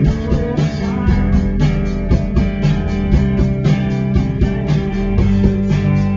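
Rock band playing live: strummed electric guitars over bass and a drum kit keeping a steady, driving beat.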